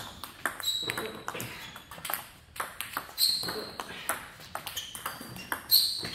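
Table tennis ball in play: a quick, irregular run of sharp clicks as it bounces on the table and is struck by the rubber-covered paddles, many bounces with a short high ping.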